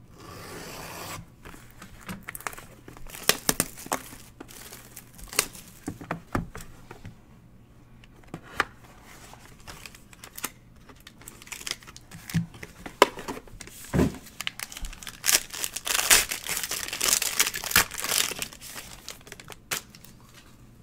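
A 2020 Topps Inception box and its foil-wrapped pack being opened by hand: foil and plastic crinkling and tearing, with scattered taps and scrapes of cardboard. Near the end comes a longer stretch of dense crinkling as the pack is torn open.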